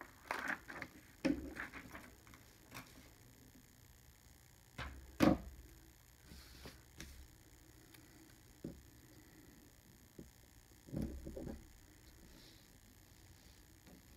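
Hands handling a paper planner page, stickers and washi tape on a wooden table: scattered soft rustles and knocks. The sharpest knock comes about five seconds in, with another pair around eleven seconds.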